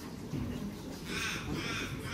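A bird giving two short, harsh calls in quick succession about a second in, over a steady low background.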